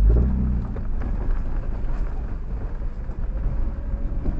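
Four-wheel-drive vehicle driving slowly along a rough dirt trail, heard from inside the cabin: a low engine and drivetrain rumble with tyre and road noise. The engine is louder for the first half-second, then settles into a steady rumble.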